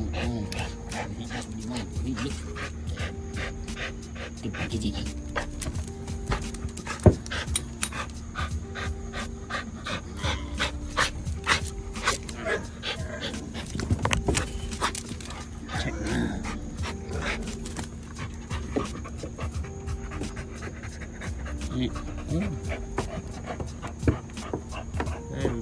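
Bully-breed dog panting hard while tugging on a rope toy, over background music with a simple repeating melody.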